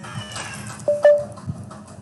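Computer keyboard being typed on, a handful of separate keystroke clicks, with a brief high call sounding over them about a second in.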